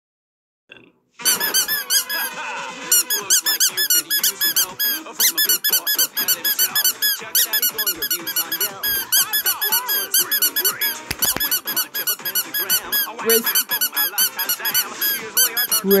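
Rubber duck squeak toy squeaked over and over in quick succession, following the rhythm of a song's vocal line, starting about a second in.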